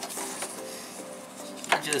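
Soft background music with steady held tones, under light rustling and small knocks as a fabric strap is handled against a plastic mini-tripod and a foam hiking-pole grip. A word of speech begins near the end.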